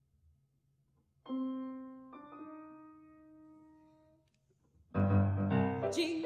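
Grand piano: after about a second of quiet, two held notes are struck about a second apart and left to ring and fade, then full, rhythmic playing comes in near the end.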